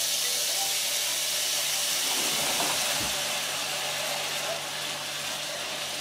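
Chicken hearts sizzling in hot oil with onions in a frying pan, a steady hiss right after the raw hearts go in, easing a little toward the end.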